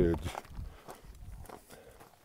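Faint footsteps of a hiker walking on a rocky, gravelly trail, a few light steps after a voice trails off at the start.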